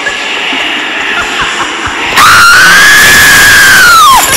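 A girl's loud, high-pitched scream starts suddenly about halfway through, is held for about two seconds and trails off downward at the end, over background music.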